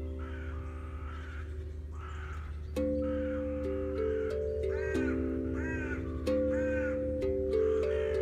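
Crows cawing again and again, in runs of arched calls, over the ringing notes of an Aquadrum played by hand. From about three seconds in, a new drum note is struck roughly every second, each ringing on and overlapping the last.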